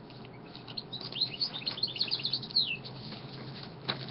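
A small bird chirping: a quick run of short, high chirps ending in a falling note.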